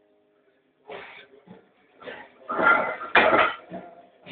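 Iron plates on a heavily loaded barbell clanking during a heavy half-squat rep, together with a person's loud, strained vocal sounds. It is quiet for about the first second, then the sounds come in short bursts, loudest around three seconds in, with one sharp metal clank.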